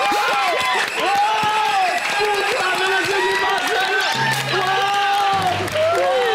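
Children and a studio audience cheering and shouting excitedly, with applause, in celebration of a win. Low bass notes of background music come in about four seconds in.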